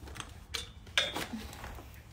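A few light clicks and knocks from a handheld phone being handled and moved about, the sharpest about a second in.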